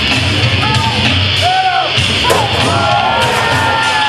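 Rock music with a singing voice, playing loud and continuous.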